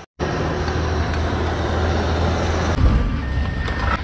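A motor vehicle running, with steady engine hum and road noise, and a single thump a little before the end.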